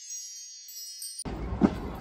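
Sparkling chime sound effect, high tinkling tones fading away, cut off abruptly about a second in by outdoor crowd noise and a loud thump.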